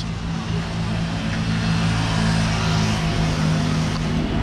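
Street traffic: a motor vehicle's engine running close by with a steady low hum, over a hiss of traffic noise that swells slightly in the middle.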